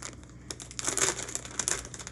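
Plastic bag of gummy worms crinkling as it is handled, a quick run of sharp crackles.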